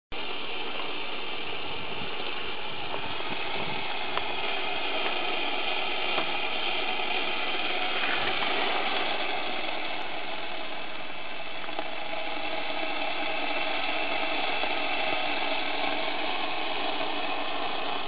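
Steam from a parabolic solar collector's receiver tube hissing steadily out of its outlet pipe, with faint whistling tones in the hiss.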